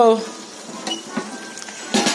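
Faint, steady sizzling hiss from a pot cooking on the stove, with a couple of light ticks about a second in.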